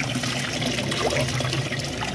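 Water bubbling and churning in an aerated fish tank, with a steady low hum underneath.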